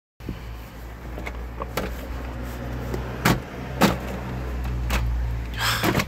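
Glovebox of a Rover Streetwise being opened: a few sharp plastic clicks from the handle and latch, then a longer clatter near the end as the lid swings down. Under it runs the steady low hum of the car's 1.4 K-series engine idling.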